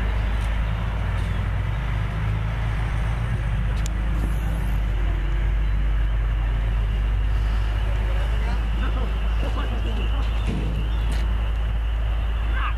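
An engine idling steadily, a constant low hum that does not change in pitch or level.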